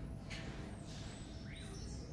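Small birds chirping outdoors: a few thin, high chirps and short curved calls in the second half, over a steady background hiss of outdoor ambience.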